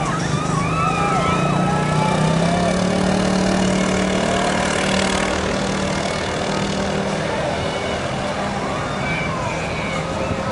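Engines of parade cars and trucks rolling slowly past at close range, with a steady engine drone that eases off near the end. Voices are heard over it at the start and near the end.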